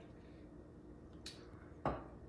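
Quiet room tone, then near the end a single sharp clink of a glass liquor bottle against a glass tumbler as a pour of cognac finishes.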